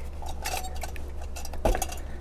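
Scattered light metallic clicks and clinks of a stock AMD Wraith CPU cooler being unclipped from its retention bracket and lifted off the processor, with a somewhat louder knock near the end.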